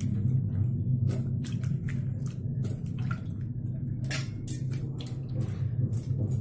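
Wet chunks of elephant foot yam dropped by hand into a metal pressure cooker, giving scattered knocks and wet clatters a second or so apart over a steady low hum.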